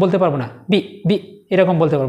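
A man's voice speaking short, separate words with held vowels, in a few bursts.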